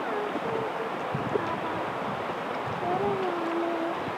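Steady rush of river water around a drift boat, with a faint voice in the background near the end.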